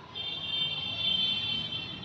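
A steady high-pitched tone, several pitches sounding together, starting a moment in and holding level.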